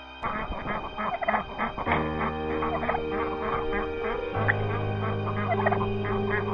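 A flock of turkeys and other poultry calling, with many short overlapping calls that begin just after the start. Soft background music with held notes comes in about two seconds in.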